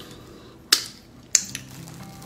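Two sharp mouth clicks from someone chewing a mouthful of food, a bit over half a second apart.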